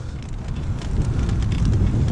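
Wind buffeting the microphone of a camera carried on a moving pedal trike, over a steady low rumble of the ride.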